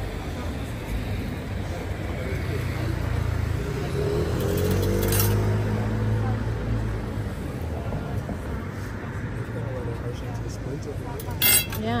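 Distant background voices over a steady low rumble, with a single clink about halfway and a few sharper clinks near the end as small silverware pieces are handled.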